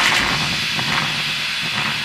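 Steady hiss-like noise with a faint low rumble under it, easing slightly in level.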